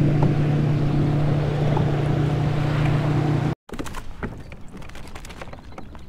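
A boat motor drones steadily at one low pitch under wind and water noise, and cuts off abruptly about three and a half seconds in. After that there is quieter water and wind with a few light clicks and taps.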